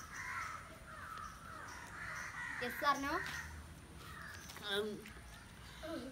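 A crow cawing, with short calls about halfway through and again near the end.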